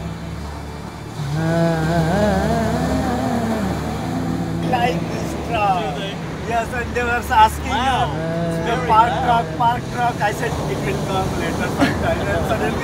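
Voices talking back and forth, busiest in the second half, over a steady low hum.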